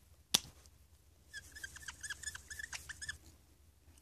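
A Copic marker's cap comes off with a single sharp click, then the felt tip squeaks on the craft mat in a quick run of short, high chirps as it is scribbled back and forth.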